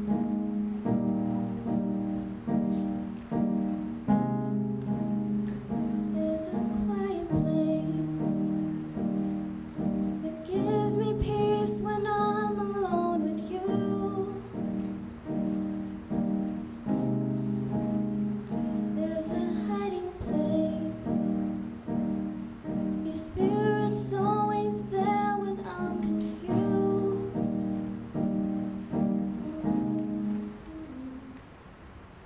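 Digital keyboard in a piano voice playing steady, repeated chords, with a woman's voice singing sustained phrases over it several times.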